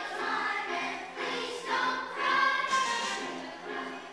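A choir of third- and fourth-grade children singing together, holding notes that change about every second, loudest in the middle.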